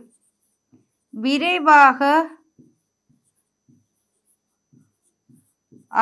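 A woman's voice speaks for a second or so, then faint, scattered short taps and strokes of a pen writing on a board.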